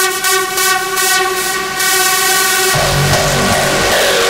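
Hardstyle dance music: a held, horn-like synth chord over fast hi-hats, then a rush of noise, and the heavy hardstyle kick drums come back in a little under three seconds in.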